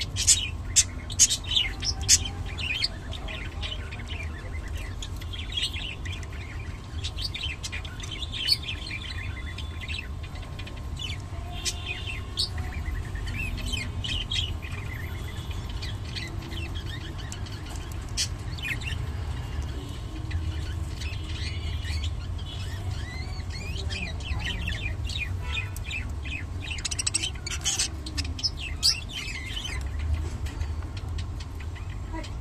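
Budgerigars chirping in short, high calls, busiest in the first few seconds and again near the end, over a steady low hum.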